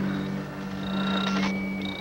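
Electronic signal tones: a steady low hum under thin high-pitched tones that come and go, with a new higher tone starting about three-quarters of the way through.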